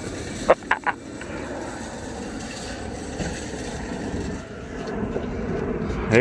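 A steady low outdoor rumble, of the kind vehicle traffic makes, with three sharp clicks in the first second.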